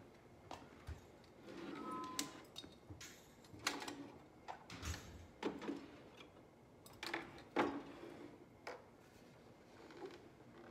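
Decorative pieces being picked up and set down on wooden hutch shelves, including a glass jar: scattered knocks and light clinks, the loudest about four and seven to eight seconds in.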